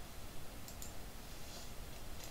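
A few faint computer mouse clicks: two close together a little under a second in, and a few more about a second and a half in, over a low steady hum.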